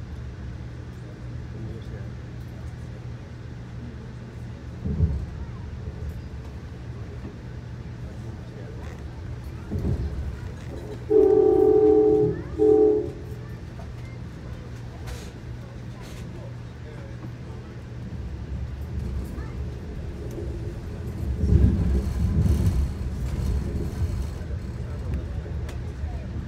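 Amtrak Keystone passenger train running on the rails, heard inside the car as a steady low rumble with a few thumps. About eleven seconds in a train horn sounds, one long blast and then a short one. Near the end the rumble grows louder and rougher.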